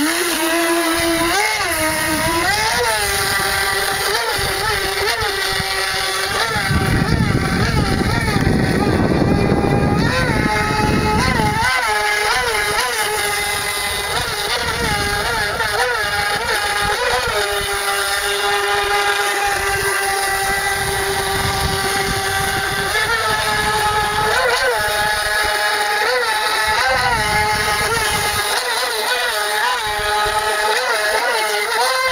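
Small radio-controlled jet boat's electric motor and jet pump whining at a high pitch, the pitch rising and dipping over and over as the throttle is worked. A low rushing noise joins in for several seconds about a quarter of the way in.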